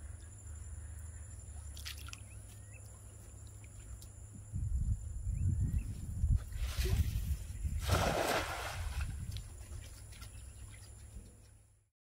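Water sloshing and splashing, with two brief splashes about seven and eight seconds in, over a low wind rumble on the microphone. The sound cuts off suddenly near the end.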